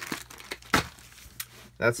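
Plastic packaging of a small replacement-parts kit crinkling and crackling as it is handled, in scattered short crackles with one sharper crackle about three-quarters of a second in.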